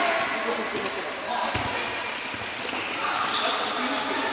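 Players calling out in a large sports hall, with one thud of a football striking the hard court about one and a half seconds in.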